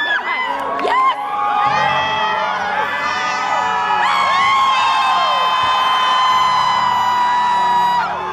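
Audience cheering, with many overlapping high whoops and screams. From about halfway a long, steady high note is held over the cheering until the end.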